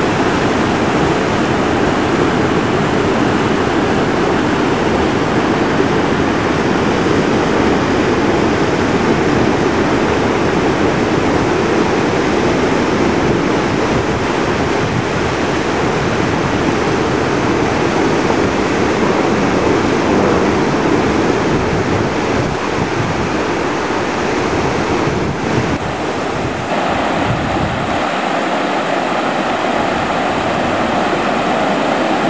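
Wet-weather river flow rushing shallow and fast over gravel and debris: a steady, loud rushing of water. The tone of the rush changes near the end.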